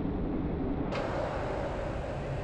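Steady outdoor background noise with a low rumble of street traffic and no distinct events.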